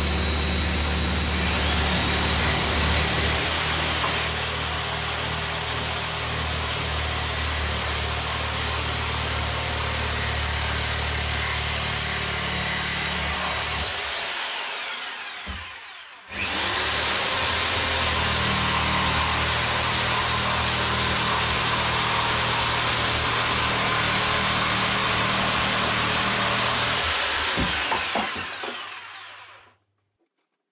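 Power saw cutting through wooden battens, running steadily. It drops away a little past halfway, starts again abruptly, and dies away near the end.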